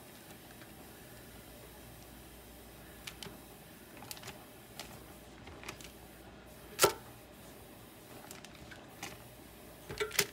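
Scattered light clicks and taps of metal kitchen tongs setting raw chicken wings into a parchment-lined air fryer basket, the loudest click about seven seconds in.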